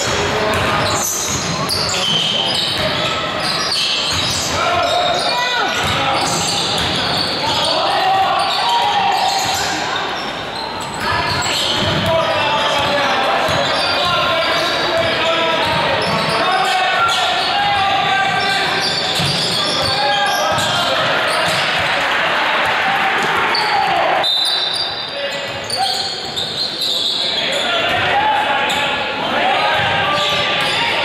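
Basketball game in a large gym: the ball dribbling and bouncing on the hardwood court, mixed with untranscribed background voices of players and spectators, all echoing in the hall.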